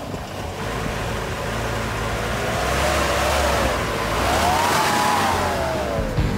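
A car engine running, with a steady low hum setting in partway through and a whine that rises and then falls in pitch in the second half.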